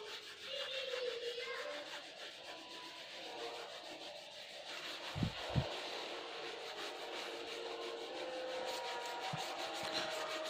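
A crayon scribbling quickly back and forth on paper, lightly shading a large area, a steady scratchy rubbing made of many short strokes. Two soft knocks come a little after five seconds in.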